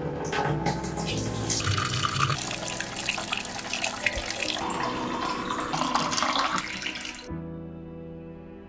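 Water running and splashing from a tap, a steady rush that cuts off abruptly about seven seconds in, over soft background music.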